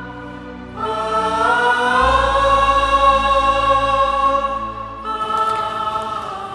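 Dramatic background score: choir-like voices hold a long sustained chord, which enters about a second in. A low drone joins beneath it, and the chord changes near the end.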